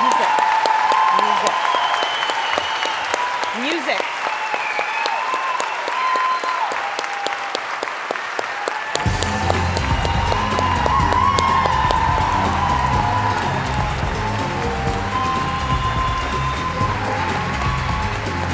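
A large audience applauding, with voices calling out over the clapping. About halfway through, music with a heavy bass beat starts under the applause.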